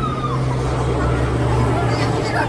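Steady low machine hum from a swinging pendulum amusement ride, with faint crowd voices. A thin high tone trails off about half a second in.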